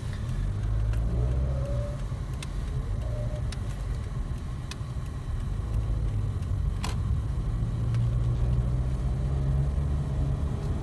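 Toyota car's engine and road rumble heard from inside the cabin as the car pulls away and drives on, the engine note rising in the first couple of seconds. A single sharp click about seven seconds in.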